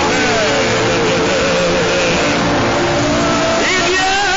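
Many voices praying aloud at once: a dense, steady babble with some wavering voices standing out above it.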